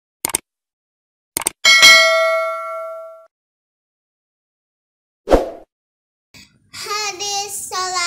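Subscribe-animation sound effects: two quick mouse clicks, then a bright notification-bell ding that rings out for about a second and a half. A single thump follows about five seconds in, and near the end a child starts chanting.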